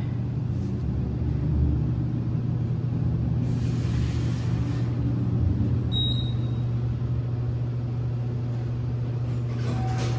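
Large ThyssenKrupp passenger elevator in motion, a steady low hum and rumble inside the car, with a brief hiss about midway and a short high beep about six seconds in. Near the end the car arrives and its doors begin to slide open.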